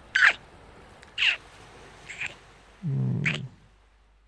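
A man's close-miked mouth sounds: three short, high smacks about a second apart, then a brief low hum that runs into a fourth smack.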